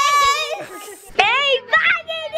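Children's voices: a long, high-pitched held shout ends about half a second in, then a high call rising in pitch about a second in and a short call near the end.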